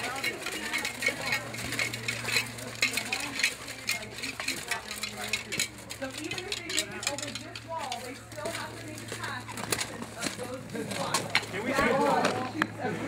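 Plate armour clinking and rattling as a line of armoured fighters walks, many small metal clicks, with low voices talking underneath.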